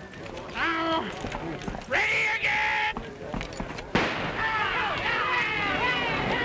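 Men shouting twice, then a single gunshot about four seconds in, and a crowd breaking into yells and whoops: the starting signal of a stagecoach race.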